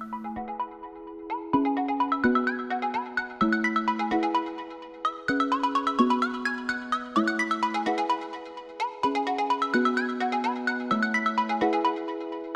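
Background music: an electronic track with a quick, plinking melody over low notes that change about every two seconds.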